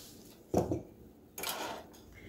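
A glass jar with a hinged lid being handled and set down on a wooden countertop: a short knock about half a second in, then a brief scraping clatter near the end.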